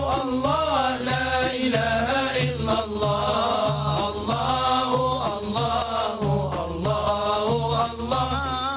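A group of men chanting a religious song together, accompanied by frame drums and a jingled hand drum keeping a steady beat.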